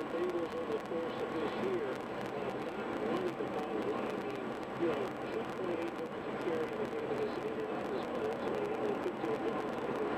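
Steady road noise inside a car's cabin at highway speed, with a muffled voice talking underneath.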